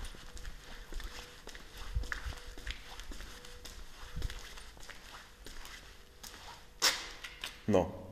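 Scattered soft knocks and rustles, with a few low thumps and one sharper knock near the end, over a faint steady hum.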